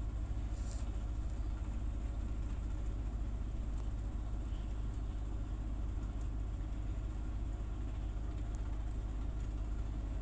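A steady low rumble with a faint hiss over it, unchanging throughout, and a couple of faint clicks in the second half.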